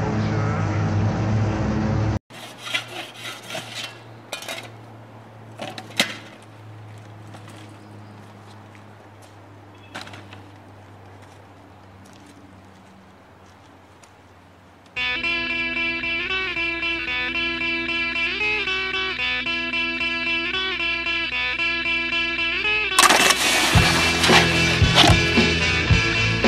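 Soundtrack music that cuts off about two seconds in, leaving a quieter stretch of scattered knocks and clatter. Music with steady held notes and a wavering melody comes in about halfway, and a louder, fuller section with a beat starts near the end.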